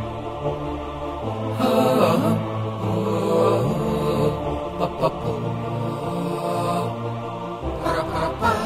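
Voices singing an a cappella, vocal-only theme song in held, layered chant-like notes, with no instruments.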